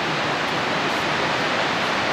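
Upper Whitewater Falls' cascading water making a steady, even rush of noise that does not change.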